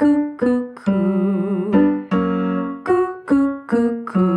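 Roland digital piano playing the accompaniment to a staccato vocal exercise: three short notes, two longer held notes, then three more short notes.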